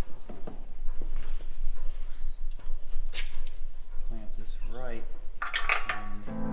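Scattered light metallic clinks and knocks of a hand tool and steel parts being handled on a chisel plow's frame, in a shop that gives a small-room sound.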